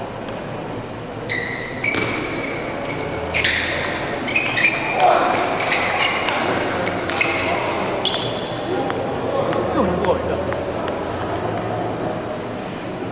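Table tennis rally: the celluloid ball clicks sharply off bats and table in quick, irregular succession, each hit ringing with a short high ping.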